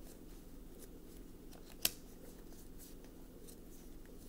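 A single sharp click a little under two seconds in, over faint soft rustles and a steady low hum.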